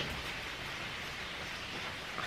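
Steady, even background hiss of room noise, with no distinct event apart from a faint click at the very start.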